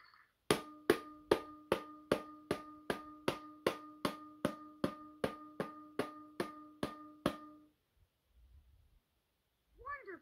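Electronic drum beats from a LeapFrog Learning Drum toy's speaker: an even run of about eighteen beats, two and a half a second, over a steady held electronic tone, stopping about seven and a half seconds in.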